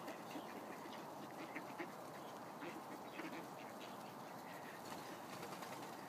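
A flock of mallards feeding together, giving soft, scattered quacks and short calls, fairly faint.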